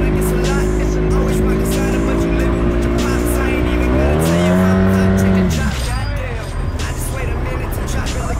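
Arctic Cat Wildcat Trail side-by-side's engine running steadily while under way. About four seconds in it revs higher and holds for a second and a half, then eases off. Scattered crackling of the tires rolling over dry leaves and twigs runs throughout.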